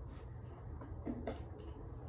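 Steady low hum, with a few faint clicks and a brief low tone about a second in.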